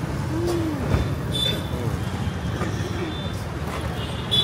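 Steady rumble of road traffic on a busy street, with background voices and a single thump about a second in.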